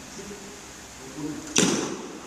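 Badminton racket striking a shuttlecock once, a sharp hit about one and a half seconds in that echoes briefly in the hall.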